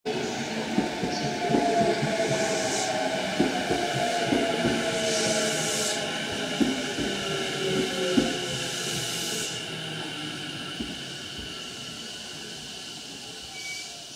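A JR East E233 series electric train slowing to a stop at a platform. Its motor whine falls steadily in pitch while the wheels knock and the brakes give several hisses of air, and the sound fades as the train comes to rest.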